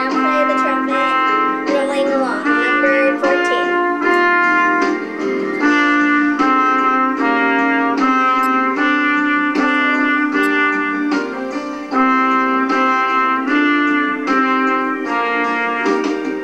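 Trumpet played by a beginner: a run of separate held notes, each about half a second to a second long, with short breaks between them.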